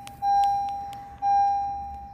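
A 2012 Honda Civic's dashboard warning chime, a single electronic ding repeating about once a second, each ding fading before the next, sounding with the ignition switched on and the engine not running.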